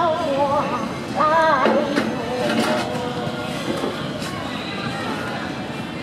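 A woman's solo singing into a microphone, held notes with wide vibrato, the last phrase ending about two seconds in. After that, a low murmur of voices and background noise.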